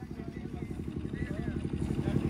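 An engine idling with an even, rapid low pulse that grows slightly louder.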